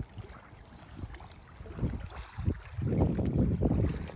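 Wind buffeting the microphone: an uneven low rumble that comes and goes, loudest in the last second or so.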